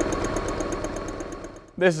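Electric sewing machine running steadily, the needle stitching at about ten stitches a second, then stopping near the end.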